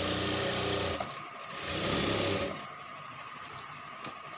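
Sewing machine stitching in two short runs of about a second each, with a brief pause between them.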